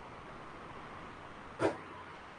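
A single short bark-like yelp, about a second and a half in, over a faint steady hiss.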